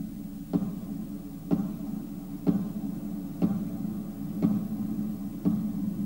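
Solo acoustic guitar: a chord struck about once a second, each left ringing into the next.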